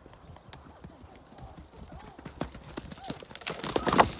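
A horse's hoofbeats on turf coming closer, faint at first and growing louder, ending in a sharper knock as the horse reaches the jump.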